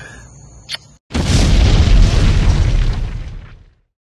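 A short laugh, then after a moment of silence a loud cinematic boom sound effect hits about a second in, with a deep rumble that fades out over about two and a half seconds.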